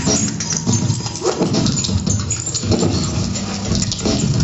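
Free-improvised music from double bass and live electronics: a dense, irregular stream of short low sounds and clicks with no steady beat.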